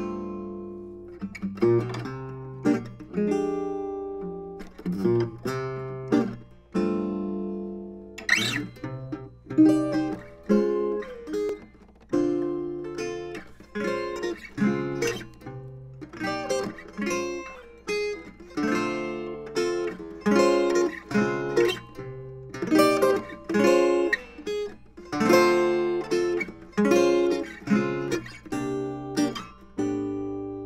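A 1934 Kay acoustic guitar, newly restored, played solo: plucked chords and melody notes in a steady rhythm, each note ringing out and decaying.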